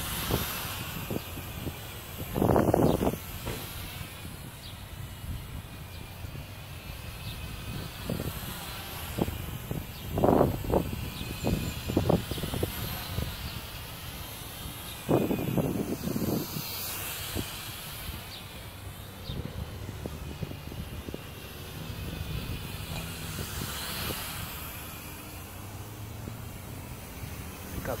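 Wind buffeting the microphone in gusts, with three stronger swells spread through, over a steady hiss.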